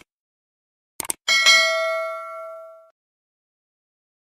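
Subscribe-button animation sound effect: two quick mouse clicks about a second in, then a bright notification-bell ding that rings out and fades over about a second and a half.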